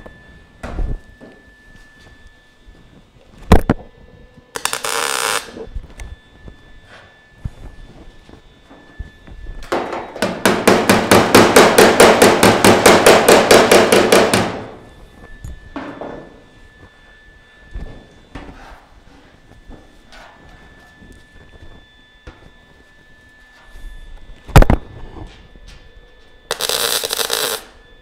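Lincoln Electric MIG welder butt-welding 18-gauge sheet steel: a short crackling tack about five seconds in, a longer stretch of fast crackling from about ten to fourteen seconds, and another short tack near the end. A couple of sharp metallic taps fall between the welds.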